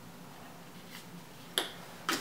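Quiet room tone with a faint steady hum, broken by one sharp click about three-quarters of the way through.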